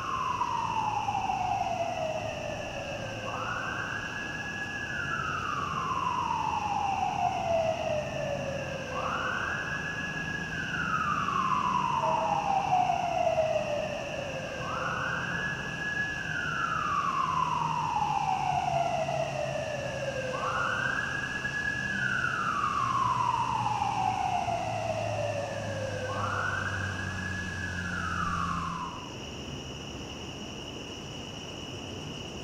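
A siren wailing in a repeating cycle: each cycle rises quickly and then falls slowly, about every five and a half seconds, over a low traffic rumble. It cuts off abruptly near the end.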